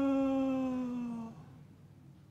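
A man's voice holding one long, wordless note that slides slowly down in pitch and fades out about a second and a half in: a dismayed cry voiced for the defeated Philistine army.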